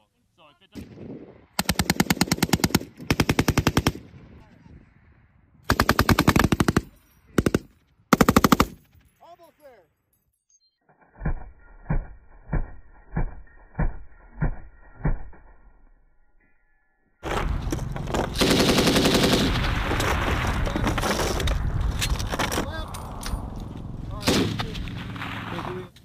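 Belt-fed machine guns, an M240B and an M249 SAW, firing. In the first nine seconds there are several short bursts of rapid automatic fire. Then comes a string of single, quieter shots about half a second apart, and from about two-thirds of the way in, a long, dense stretch of sustained firing.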